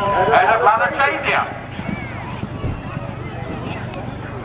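A man's race commentary over the public address, ending about a second and a half in, then a quieter outdoor background with faint voices.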